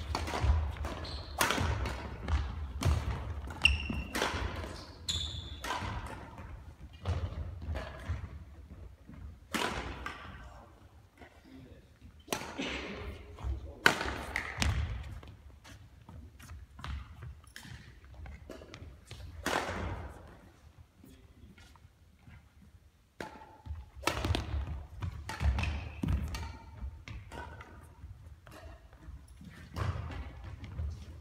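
Badminton rallies: rackets striking the shuttlecock and players' feet thumping on the hall floor, in quick runs of sharp hits with a lull of scattered knocks in the middle. The hits ring on in a large hall.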